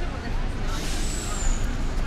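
City street traffic with a steady low engine rumble. About half a second in, a bus's air brakes let out a hiss lasting just over a second, with a thin falling whistle on top, over faint voices of passers-by.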